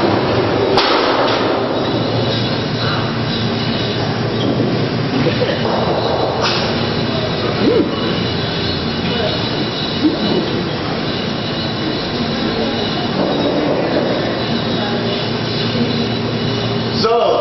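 Steady, loud running noise of brewhouse machinery with a constant hum, and two sharp knocks, one about a second in and one about six seconds in.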